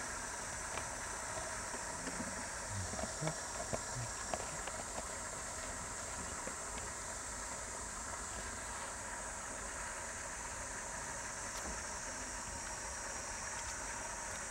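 Steady high-pitched insect drone, with faint soft low sounds in the first few seconds.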